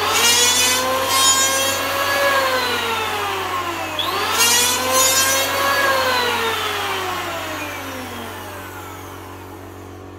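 Handheld electric planer run twice. Each time the motor spins up with a whine, the cutter shaves the wood for about a second with a coarse cutting noise, and then the motor is let go and winds down with a falling whine.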